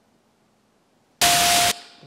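A single beep buried in loud hiss, lasting about half a second and starting a little over a second in, then cutting off. It is a noisy test tone from a beep-duration reproduction experiment, the tone made less clear by the added noise.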